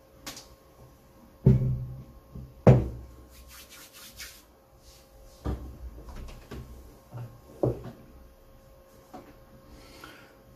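Steel tube RC rock bouncer frame with an aluminium skid plate being set down and shifted on a desk: two loud knocks about one and a half and nearly three seconds in, a brief scrape, then a few lighter knocks.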